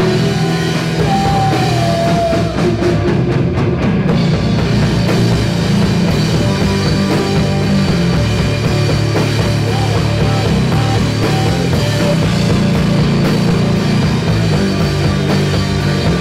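Live rock band playing loud and steady: electric guitars over a drum kit.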